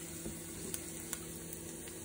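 Leftover ham, garlic and turmeric frying in olive oil in a pan: a steady sizzle with a few faint ticks about a second in, over a low steady hum.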